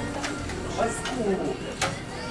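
Background music with indistinct voices of other diners, and two short clicks about a second apart.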